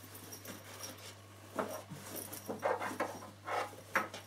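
Quilted fabric carry case being handled and turned, a few short soft rustles and brushes of cloth, over a faint steady hum.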